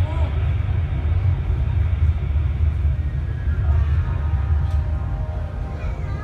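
Steady low rumble of the Ocean Express funicular train running through its tunnel, heard inside the passenger cabin, with faint voices behind it in the second half.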